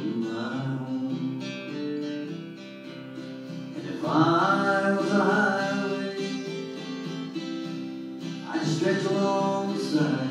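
Solo acoustic guitar strummed as a steady country-folk accompaniment. A man's voice comes in with held sung phrases about four seconds in and again near the end.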